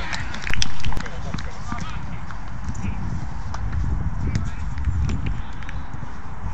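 Pitch-side sound of a small-sided football match on artificial turf: players' shouts and calls, with scattered sharp knocks from ball kicks and footfalls over a steady low rumble. A brief loud burst lasts about half a second, starting about half a second in.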